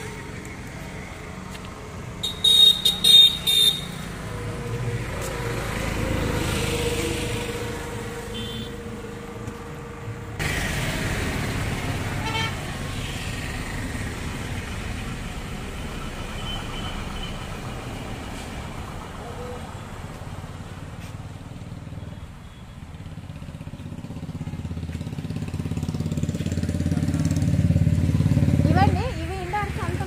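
Road traffic going by, with a quick series of short horn toots about two to three seconds in and a low vehicle rumble that grows louder towards the end.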